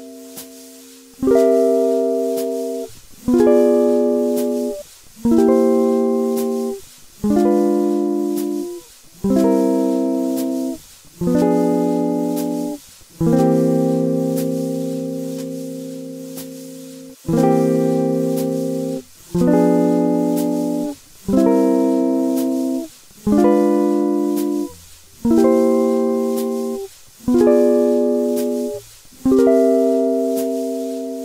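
Guitar playing a chord exercise, C dominant seventh chord shapes alternating with diminished seventh chords. Each chord is struck once and left to ring about two seconds before the next, with one chord held for about four seconds midway.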